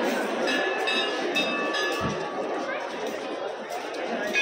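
Crowd chatter in a busy courtyard, with a temple bell struck about three times in the first two seconds, each stroke ringing briefly.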